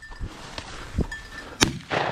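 A single shotgun shot about one and a half seconds in, one sharp crack, fired at a flushed pheasant that it brings down. A fainter knock comes about half a second earlier.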